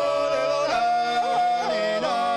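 Three men singing Georgian polyphonic song a cappella: several voice parts are held together while one voice moves with short ornamented glides between notes.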